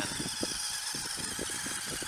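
Steady high-pitched whine of small electric motors, with a few faint light knocks.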